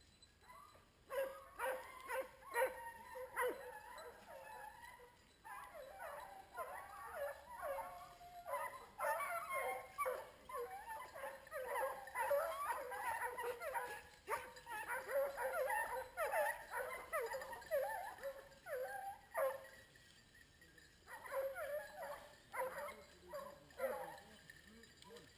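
A pack of hunting hounds giving tongue (baying) on a wild boar's scent during a boar-hunting hound trial: many overlapping barking cries starting about a second in, with a short lull near the end before they pick up again.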